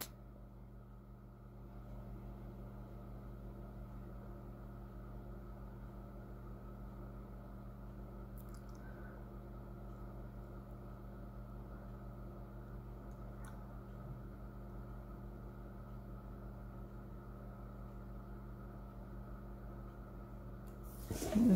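A steady low hum with several faint steady tones in a quiet small room, and two faint clicks a few seconds apart near the middle.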